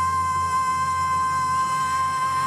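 A woman's belted voice holding one long, steady high note over a band accompaniment, the note starting to waver slightly near the end.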